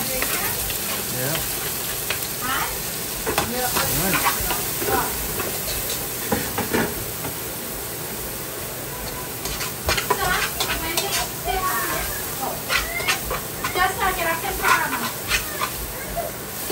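Chopped garlic and herbs sizzling in hot oil in a pot, with a spoon stirring and scraping against the pot in short clicks over the second half.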